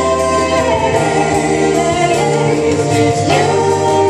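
Vocal trio of two women and a man singing in close harmony into handheld microphones, amplified through a PA speaker, holding sustained notes that shift pitch together.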